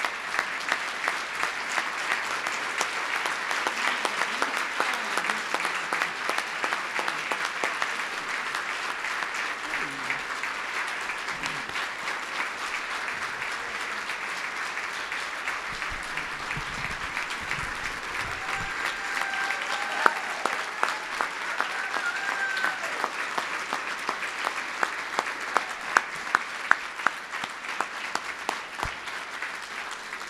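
Audience applauding in a standing ovation: dense, steady clapping that thins near the end into fewer, separate louder claps.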